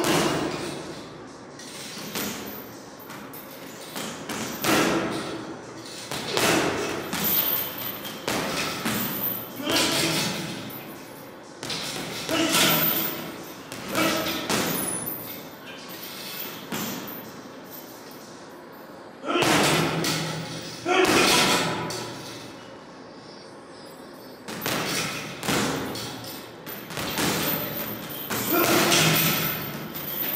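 Boxing gloves punching a heavy bag and a hanging teardrop bag: thuds and slaps landing in quick combinations, in bursts every few seconds with short pauses between. Sharp breaths go with the punches.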